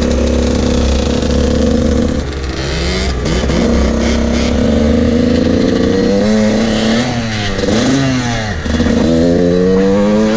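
Dirt bike engine pulling under way. Its note holds steady, falls off and climbs again in rising sweeps as the throttle is rolled off and back on through the gears, with wind buffeting the microphone.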